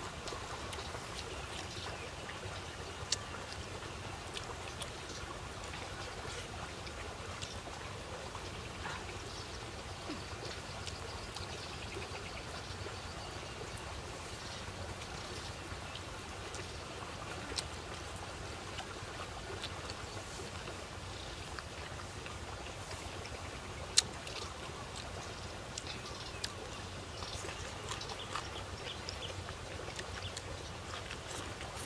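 Close-up eating sounds of chewing and lip-smacking while eating by hand, small wet clicks scattered throughout with a sharper click about 24 seconds in, over a steady low outdoor background noise.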